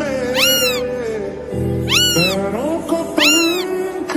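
Three meow-like calls, each rising and then falling in pitch, about one and a half seconds apart, over steady background music.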